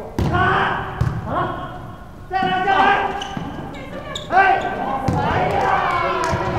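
A volleyball struck by a hand and then hitting the hardwood gym floor: two sharp smacks, just after the start and about a second in, that echo in the large hall. Players shout and call out through the rest of the rally.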